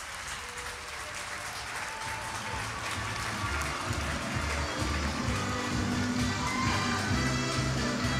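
Applause from spectators, then background music with a heavy bass beat fading in about two seconds in and growing louder.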